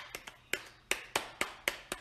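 Light, sharp hand claps in an uneven quick series, about three or four a second.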